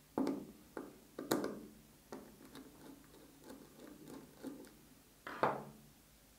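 Small plastic electrical parts, a DIN-rail miniature circuit breaker and wiring components, being handled on a tabletop: a few sharp clicks and knocks with softer taps between, the loudest near the end.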